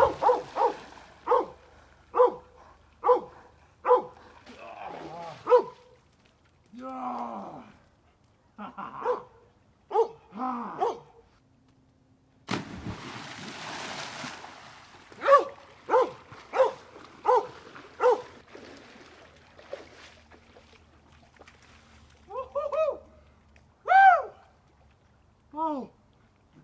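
A dog barking over and over, about once a second, with a burst of water splashing from a swimmer about halfway through. After the splash the barking picks up again, and higher whining yelps that rise and fall come near the end.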